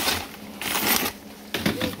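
Rustling and scraping as a wooden-framed wire-mesh sieve is lifted and set down onto another mesh sieve, loudest about halfway through.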